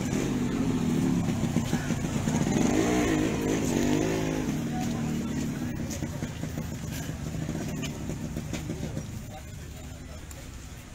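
A motor vehicle engine passing close by. It revs up to its loudest about three to four seconds in, then fades away.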